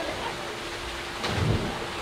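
Steady rush of falling water from a backyard pool's rock waterfall, over a faint steady hum, with a dull low thump about one and a half seconds in.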